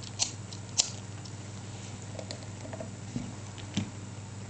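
A few light clicks and taps, the sharpest just under a second in, from hands handling things while the alcohol burners under a model Stirling engine are lit, over a steady low hum.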